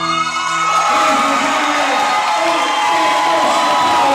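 Dance music ends on a held final note within the first second. A crowd then breaks into loud cheering, shouts and whoops.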